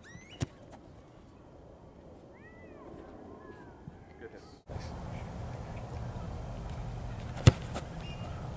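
A football kicked off the ground: a sharp thud of foot on ball about half a second in, and a second, louder kick near the end. A few short bird chirps sound in between, over steady outdoor background noise that gets louder about halfway through.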